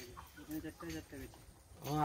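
Faint voices talking in the background in short broken phrases, then a louder spoken "haan" right at the end.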